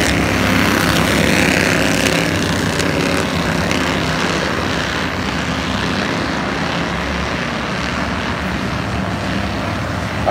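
Bandolero race cars' small single-cylinder engines running at racing speed in a pack, a steady buzzing drone. It is loudest as the cars pass close at the start and slowly fades as they pull away.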